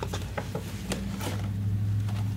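A hand rummaging in an open cardboard box and lifting out a boxed item: a few light knocks and rustles of cardboard and packaging, over a steady low hum.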